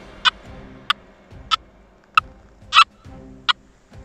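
Nokta Makro Gold Finder 2000 metal detector giving short beeps, six of them about every 0.6 s, as its coil sweeps back and forth over a Pułtusk stone meteorite. It is a weak response from a gold detector that largely ignores stone meteorites.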